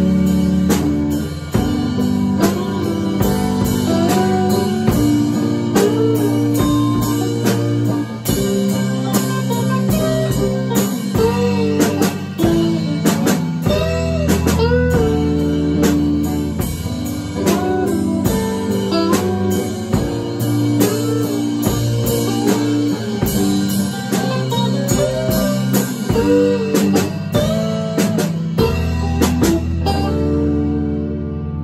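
Live rock band playing an instrumental passage: a lead electric guitar with many bent, gliding notes over a steady drum kit, bass and keyboard.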